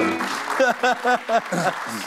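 A short musical jingle, a quick run of about six short pitched notes, over studio audience applause.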